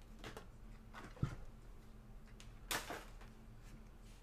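Hands handling trading cards on a table: a single sharp knock about a second in, then a short sliding rustle near the three-second mark.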